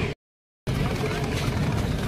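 Rolling suitcase wheels rumbling over a tiled ramp, with voices in the background; the sound drops out to dead silence for about half a second near the start.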